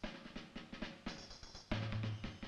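Background music driven by drums: a fast run of snare-drum strokes, with a low held note coming in near the end.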